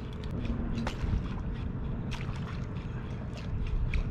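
Small waves lapping against a kayak hull over a low, steady rumble, with a few light ticks and taps.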